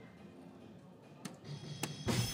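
Soft-tip darts striking an electronic dartboard: two sharp clicks about half a second apart near the end, over faint background music.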